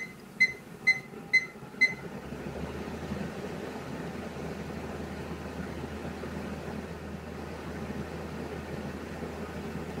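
WeCreat fume extractor's control panel beeping five times, about half a second apart, as its extraction fan is stepped up from 50% to 100% power. The fan then runs steadily at full speed.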